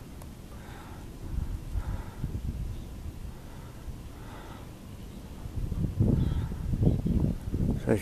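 Low rumble of wind on the camera's microphone, stronger for a couple of seconds near the end.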